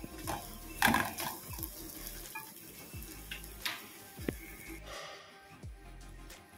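Steel kadai of tempering (onions, dried red chillies, curry leaves) frying in oil, with a spoon stirring it and knocking against the pan in several sharp metal clicks.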